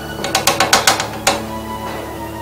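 Gas cooker's igniter clicking rapidly, about seven sharp clicks in just over a second, as the burner is being lit, over quiet background music.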